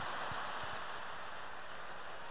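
Live audience applauding steadily.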